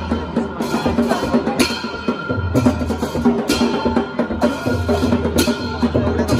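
Percussion music with a deep drum pattern and a bright metal cymbal clash about once a second.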